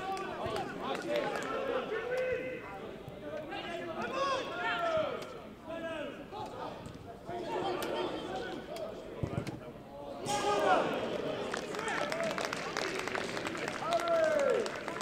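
Several voices of players and spectators calling and shouting across an open-air football pitch, overlapping so that no words stand out. About ten seconds in, the background noise rises, with a run of sharp clicks.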